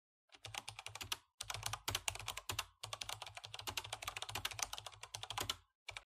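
Computer keyboard typing: rapid clicking in three runs, with short breaks about a second and a quarter and about two and three-quarter seconds in, stopping just before the end.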